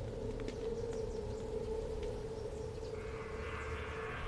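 Outdoor ambience with faint, scattered bird chirps over a steady low hum and a held low note.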